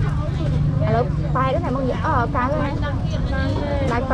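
People talking at a market stall, with a low, steady engine hum underneath.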